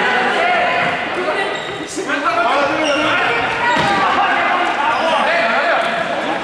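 Many young voices talking and calling out over one another, echoing in a large sports hall, with occasional thumps.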